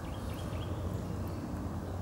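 Quiet outdoor background: a steady low hum under faint even noise, with no distinct event.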